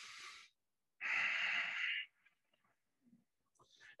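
Audible 'stress breath' (the 'Darth Vader breath'): a man breathing through the nose with the mouth closed and the throat narrowed, as for fogging a mirror. A faint breath at the start is followed about a second in by a stronger hissing breath lasting about a second.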